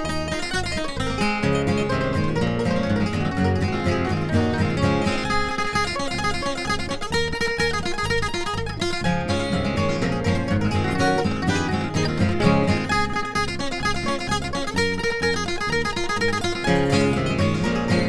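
Bluegrass instrumental break with no vocals: a flatpicked acoustic guitar played with a mandolin and a bass guitar in a steady, driving rhythm.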